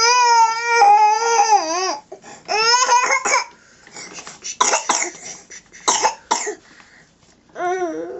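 A young child's high-pitched wavering cry held for about two seconds, then a shorter rising cry, followed by a run of several coughs in the second half.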